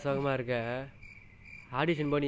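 A man speaking, with a cricket chirping steadily in the background, heard on its own in a pause in the middle.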